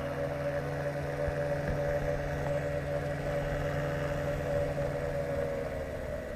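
Ultralight trike's engine idling steadily after landing, its pusher propeller turning slowly. It is an even, unchanging hum, and the lowest note drops away near the end.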